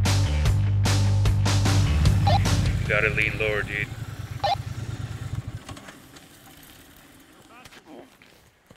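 Background music that stops about two seconds in, then a Triumph Bonneville T100's 900 cc parallel-twin engine running as the motorcycle rides through a bend, fading away by about five seconds. A brief voice-like call comes about three seconds in.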